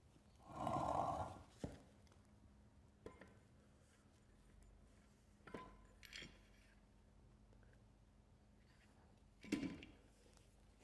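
A short, louder strained sound about a second in as the heavy Powerglide transmission is lifted, then a few faint clunks and knocks of metal as the transmission case is slid onto the splined shaft of an electric motor, the last knock near the end being the loudest of them.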